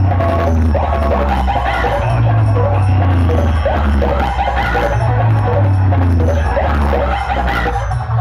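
Loud dance music blasting from a towering DJ speaker-cabinet stack (a 'B cabinet' rig), dominated by heavy, sustained bass notes with a melody riding above.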